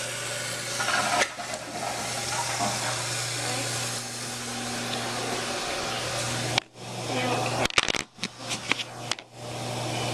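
Older Toto Drake toilet tank refilling after a flush: a steady rush of water through the fill valve, with a low hum underneath. Late on, the rush is broken for a few seconds by knocks and scraping.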